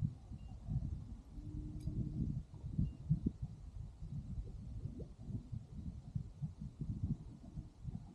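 Wind buffeting the microphone: an uneven low rumble that swells and dips throughout.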